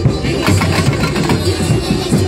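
Samba school drum section (bateria) playing a loud, dense, steady groove: a constant deep drum rumble under quick rhythmic strokes of drums and hand percussion.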